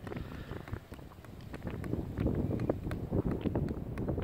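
Sliotar bouncing on the boss of a hurley, a run of light taps about three a second, over wind rumbling on the microphone.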